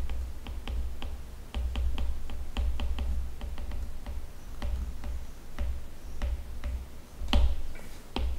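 Pen stylus tapping and ticking on a tablet surface while handwriting: an irregular run of small clicks over a low rumble that comes and goes, with a louder knock near the end.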